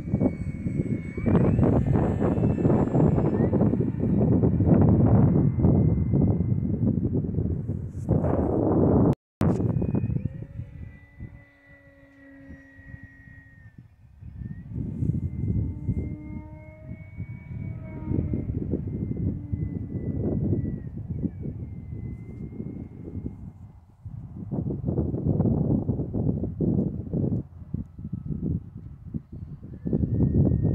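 Electric RC model plane, an E-flite Carbon-Z Cub, flying overhead: a thin motor-and-propeller whine that slowly slides up and down in pitch as it passes. A loud, gusty rushing noise covers the first third and the last few seconds, with a brief dropout in the sound about nine seconds in.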